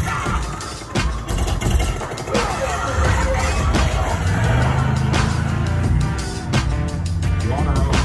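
Ride soundtrack of a 3D motion-simulator dark ride: loud action music mixed with crashes, impacts and a deep rumble, heaviest around the middle.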